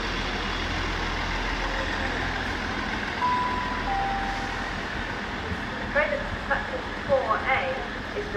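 Diesel multiple unit train running with a steady low rumble. About three seconds in, a short two-note horn sounds, a higher note then a lower one. Voices come in near the end.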